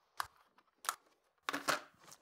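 Clear plastic clamshell case being snapped open by hand: two short sharp plastic clicks as the clasps let go, then a brief rustle of plastic handling near the end.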